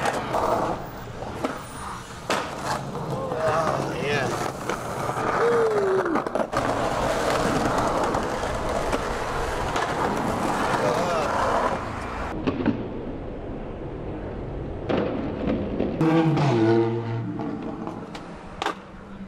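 Skateboard wheels rolling over a concrete sidewalk in a steady rough rumble, broken by sharp clacks of the board popping and landing.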